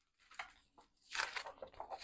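Paper rustling and handling noise as a picture book's page is turned, in short irregular bursts that grow denser after about a second.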